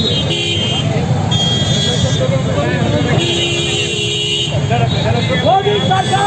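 Street traffic with vehicle horns sounding three times, the last held for over a second, amid the voices of a crowd.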